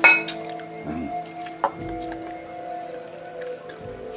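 A metal spoon clinking against dishware: one sharp clink at the start, then a few lighter taps, over steady background music.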